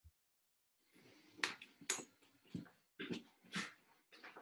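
Rustling, bumps and footfalls of a person moving about close to the microphone as she gets up and steps back onto a yoga mat: a run of short irregular rustles and knocks starting about a second in, the louder ones roughly every half second.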